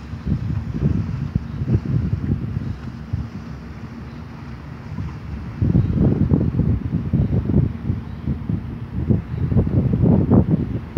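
Wind buffeting the microphone in irregular gusts, with stronger gusts in the second half.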